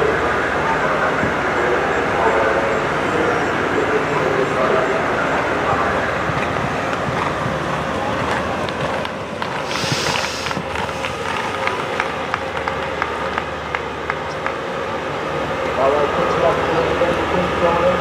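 Indistinct voices talking in the background over a steady outdoor hum. In the second half comes a run of light, fairly regular knocks, just after a brief hiss about ten seconds in.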